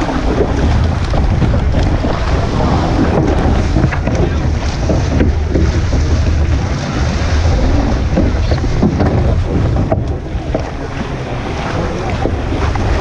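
Wind buffeting a stern-mounted action camera's microphone over water splashing and spray as a surf boat is rowed through choppy sea.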